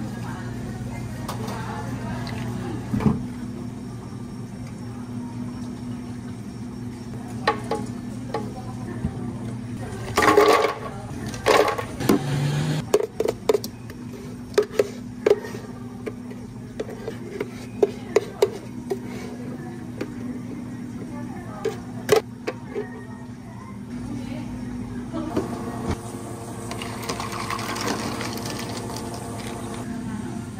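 Café drink-making at the counter: liquid poured into iced glasses, and a run of clinks, knocks and taps of metal jugs, glassware and utensils, loudest in a clatter about ten seconds in. A steady low hum runs underneath.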